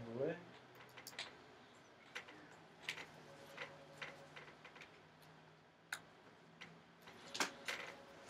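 Light, scattered clicks and taps of a small screwdriver and gloved hands working the hinge screws on an opened MacBook Air's aluminium chassis as the loose hinge is tightened down, with a louder flurry of clicks near the end as the laptop is handled.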